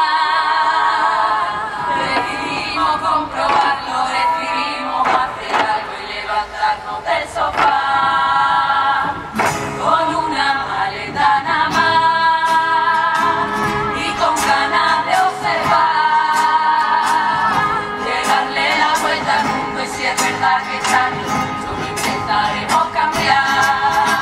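A women's carnival murga chorus singing together in unison, a steady loud song. A percussion beat of drum strokes joins about ten seconds in.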